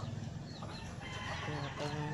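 Chickens clucking close by, with small birds chirping in the background.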